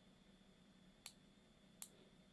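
Near silence: room tone, with two faint clicks, one about a second in and one near the end.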